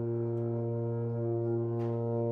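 Sousaphone holding one long, steady low note, sustained for as long as the player's breath lasts in a longest-note contest.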